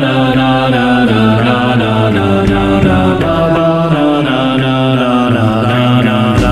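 Ten-part a cappella vocal arrangement: many layered voices singing sustained chords that shift together every second or so.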